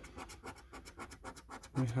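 A coin scraping the scratch-off coating off a paper scratch card in quick repeated strokes, several a second.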